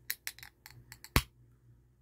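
Aluminium drink can being handled: a string of light clicks and taps, the loudest a single sharp click about a second in.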